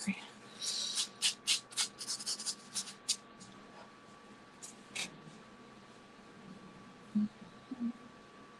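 A pastel stick working on paper: a run of quick, scratchy strokes in the first three seconds, then two more about five seconds in.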